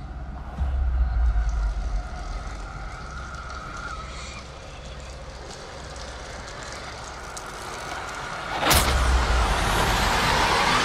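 Dark cinematic trailer sound design: a deep low rumble under a thin, eerie sustained tone. Near the end comes a sudden loud burst of noise.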